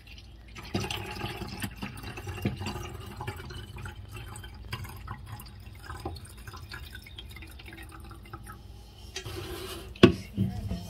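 Sugar water poured from the rim of a stainless steel pot into a plastic bottle: a thin stream trickling and splashing into the bottle's neck, starting about a second in.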